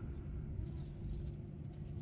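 Quiet outdoor background noise, low and steady, with a faint brief chirp a little under a second in.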